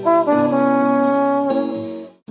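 Instrumental jazz with brass instruments playing held melody notes over light, regular cymbal hits, the music tapering off near the end.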